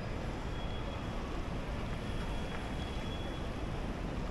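Steady outdoor background noise, a low rumble with a hiss over it and no distinct events: wind on the microphone mixed with distant traffic.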